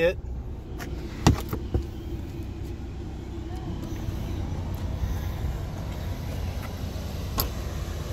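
Several sharp clicks and knocks in the first two seconds and one more near the end, as plastic cargo-area floor panels and trim are handled and set back in place, over a steady low rumble.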